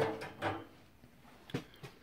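Two light clicks of hands working the brass diverter valve cartridge of a combi boiler, as it is turned and loosened by hand.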